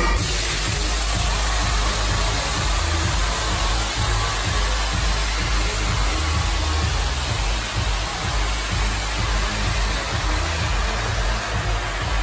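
Loud electronic dance music with heavy, pulsing bass from a nightclub sound system, recorded on the dance floor so that it comes through as a dense wash with a hiss over it.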